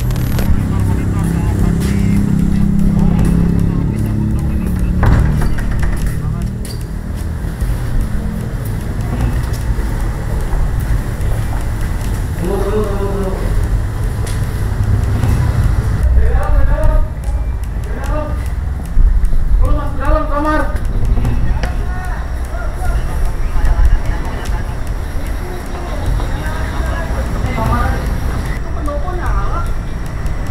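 Indistinct, muffled voices off and on over a steady low rumble.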